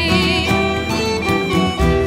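Scottish folk band playing an instrumental passage: fiddle melody over strummed acoustic guitar, with steady held notes and no singing.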